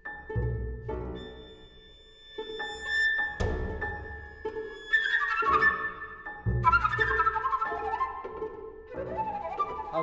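Small chamber ensemble of harp, flute, violin and double bass playing a slow, quiet contemporary piece: held high tones over three deep low swells, growing busier and louder about halfway through.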